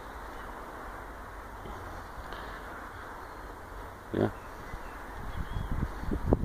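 Steady, even background hiss outdoors, with a short spoken "yeah" about four seconds in and low knocks from the phone being handled near the end.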